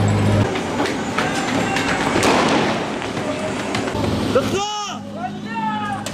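Men shouting amid scattered sharp bangs. A steady low hum, most likely the idling engine of an armored police vehicle, cuts out about half a second in and returns near the end.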